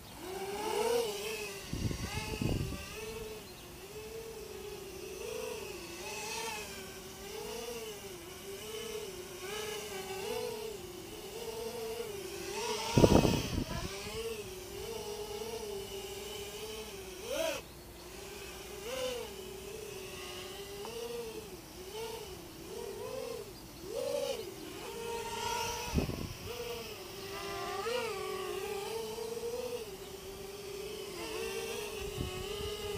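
Eachine Novice 3 FPV quadcopter's motors and propellers whining in flight, the pitch wobbling up and down constantly with throttle corrections on a test flight at freshly lowered rates. Three brief bursts of low rumbling air noise come through, the loudest about halfway.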